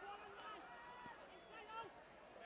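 Near silence, with faint distant voices calling out from around the field.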